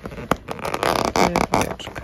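Cardboard crackling and tearing, with small clicks, as fingers press and push open a perforated door on a Hot Wheels advent calendar.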